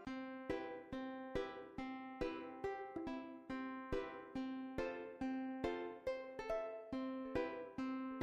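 Quiet background music: a plucked string instrument playing a light melody of single notes in a steady run, each note ringing briefly and fading.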